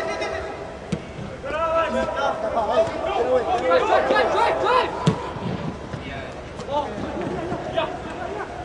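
Players shouting and calling to each other on the pitch, with two sharp thuds of a soccer ball being kicked, about a second in and just after five seconds in.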